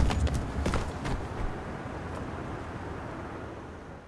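A man hit by a car tumbling on the asphalt: a few scattered knocks in the first second or so, over a rumbling tail from the crash that steadily fades away by the end.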